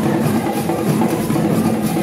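Ewe traditional drum ensemble playing a steady, dense rhythm.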